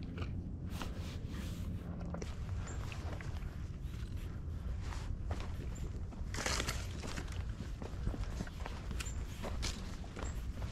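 Footsteps of a hiker walking on a dirt and rock forest trail, an irregular run of soft steps over a steady low rumble on the microphone, with a louder brushing rustle about six and a half seconds in.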